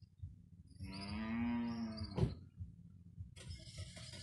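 A cow mooing once, one long call of about a second and a half, followed by a sharp click. A short burst of hiss near the end cuts off abruptly.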